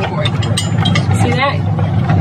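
Steady low hum of a boat's idling engine, with a few light clicks of metal as the anchor and chain are handled.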